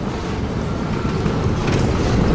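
Hess Swisstrolley 5 electric trolleybus passing close by on a cobblestone street, its tyre rumble growing louder as it draws alongside.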